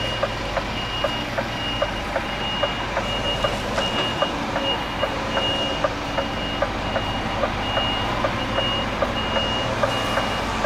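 A vehicle reversing alarm beeping over and over in a high single tone, over the steady low running of a lorry's diesel engine, with a fast, regular clicking alongside.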